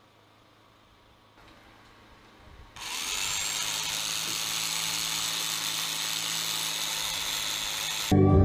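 Near silence, then about three seconds in a corded electric drill starts and runs steadily at full speed, drilling into the top of a wall.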